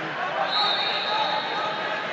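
Busy sports-hall ambience of people talking over one another. A steady high tone enters about half a second in and holds for over a second.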